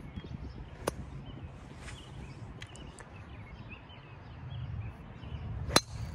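Golf driver striking a ball: one sharp crack near the end, the loudest sound, over faint outdoor background noise. A smaller click comes about a second in.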